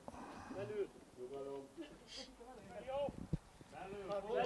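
Men's voices calling out in short, faint shouts across a football pitch, with a single sharp knock about three seconds in.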